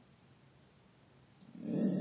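Quiet at first, then about three-quarters of the way in a dog starts a low growl that builds toward a bark.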